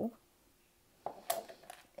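Brief handling noises of a metal Pokéball tin, with a sharp click about a second and a quarter in as its lid is put down.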